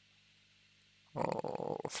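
A man's drawn-out, creaky hesitation sound "эээ", starting about a second in after near silence and running into the next spoken word.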